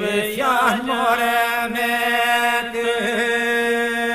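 Unaccompanied Albanian men's polyphonic folk singing in the Kërçova style: a group holds a steady drone (iso) while a lead voice sings over it. The lead voice moves in wavering turns about half a second in, then settles into long held notes above the drone.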